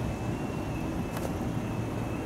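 Steady low rumble of a vehicle engine running close by, with a faint steady high whine and a single sharp tick about a second in.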